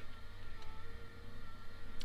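Faint steady low hum with a few thin, steady high whine tones over it.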